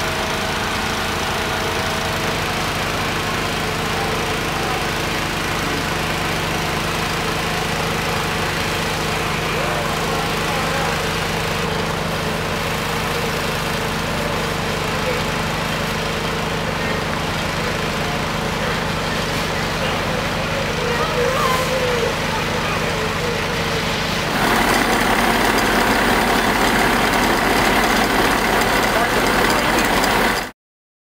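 Fire engine running steadily at a fire scene, its engine and pump making a constant drone, with faint indistinct voices. About three-quarters of the way through it cuts to a louder, closer sound of the engine with a thin high tone over it.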